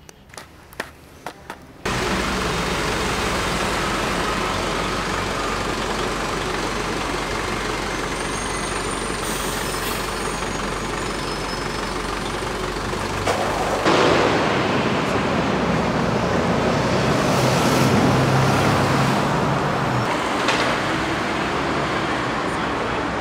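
Steady city street traffic noise, a continuous wash of passing vehicles, cutting in abruptly about two seconds in after a few soft clicks; it grows a little louder about fourteen seconds in.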